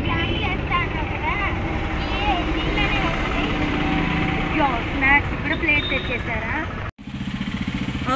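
Steady street-traffic rumble with motor-vehicle engines running, and voices of people talking over it; the sound cuts out briefly about seven seconds in.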